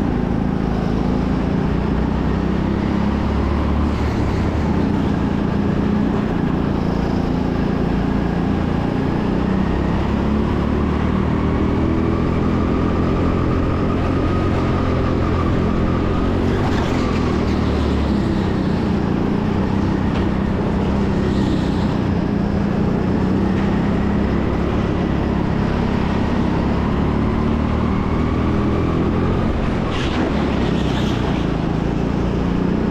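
Onboard sound of a racing go-kart driven at pace around a track: a continuous motor note whose pitch rises and falls as the kart accelerates out of corners and lifts into them.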